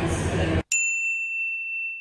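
Busy station-hall crowd noise for about half a second, then an abrupt cut to a single high ding sound effect that rings and slowly fades.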